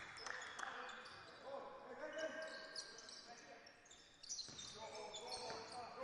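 Faint basketball dribbling on a hardwood court, with scattered faint voices of players on the floor.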